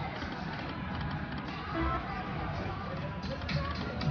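Casino floor din: slot machine game music and jingles over background chatter.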